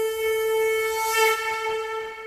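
Title-sequence music: a single long, steady note from a wind instrument, rich in overtones, with a brief hiss about a second in.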